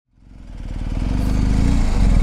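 BMW R1250GS Adventure's boxer twin engine idling with an even low pulse, fading in from silence over the first second.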